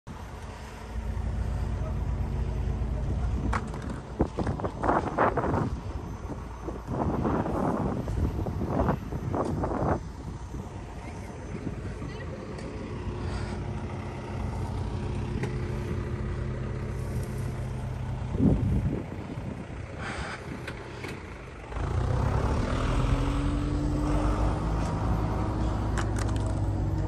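A pickup truck's engine running, with people talking at times. About 22 seconds in the engine gets louder and a rising whine sets in.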